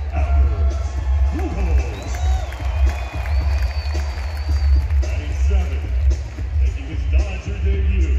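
Stadium public-address speakers playing music with a heavy, steady bass during the starting-lineup introductions, over crowd noise.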